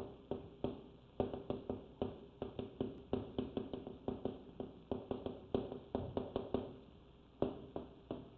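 Chalk writing characters on a blackboard: a quick, irregular run of small taps as each stroke is laid down, with a brief pause near the end before a few more taps.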